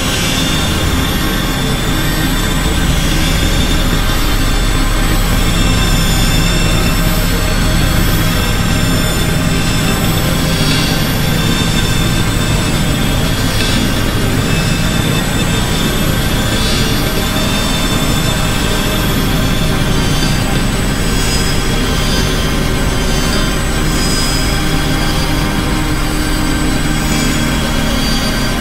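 Dense experimental electronic noise music: a steady haze of hiss over a low rumble, with several sustained high tones held through it at a constant loud level.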